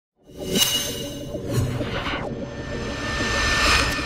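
Whoosh sound effects of an intro logo reveal over a low steady drone: a whoosh about half a second in, a second one falling in pitch around two seconds, then a rising swell that peaks just before the end.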